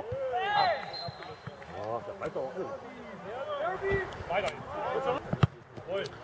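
Several men's voices shouting and calling out across a football pitch. A few sharp thuds of the football being kicked or headed come in between.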